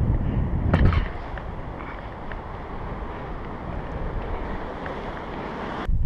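Wind buffeting the camera's microphone for about the first second, then a steady wash of surf breaking on the beach.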